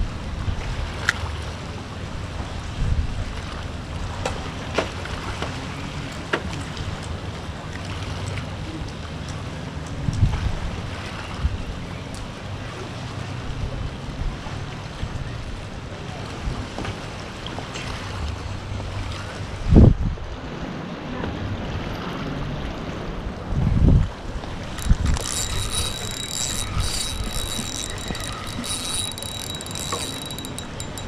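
Wind buffeting the microphone over steady surf, with a few low thumps. Near the end a spinning reel is cranked fast, a rapid run of clicks with a thin whine, as a hooked fish is reeled in.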